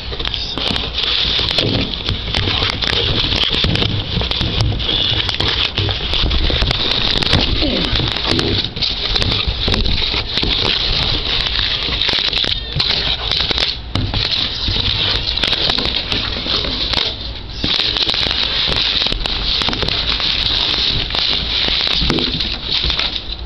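Cardboard shipping box and crumpled newspaper packing being handled and pulled open, with continuous rustling and crackling and rubbing close to the microphone.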